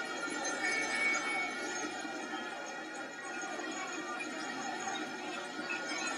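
Crowd in the stands cheering a goal, a steady din that eases off slightly.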